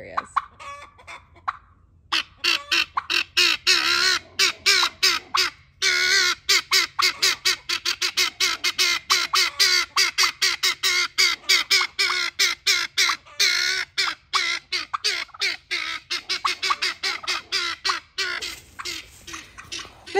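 Helmeted guineafowl alarm-calling: a harsh, rapid chatter of about five calls a second that starts about two seconds in and keeps going, the bird's reaction to unfamiliar animals.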